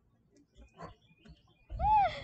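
A dog's short whine near the end, its pitch rising and falling, with a thud close to the microphone. A few faint knocks come before it.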